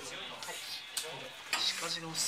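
Sleeved trading cards being handled on a playmat: a few soft clicks and rustles, with faint chatter in the background.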